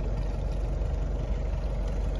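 Boat engine idling: a steady low rumble.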